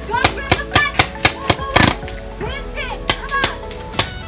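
Paintball markers firing in quick runs of sharp pops, about four a second for the first second and a half, then a short burst of three shots later on. Music and voices run underneath.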